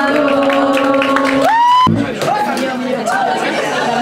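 Live band music: a held note slides sharply upward and is cut off abruptly just before two seconds in. Voices and chatter follow, over the music.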